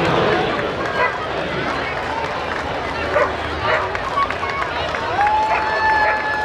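Parade spectators chattering along the street, with a couple of short sharp sounds midway that fit dog barks. A steady held tone starts near the end.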